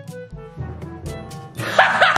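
Background music with light pitched notes, then about one and a half seconds in a man breaks into a loud laugh.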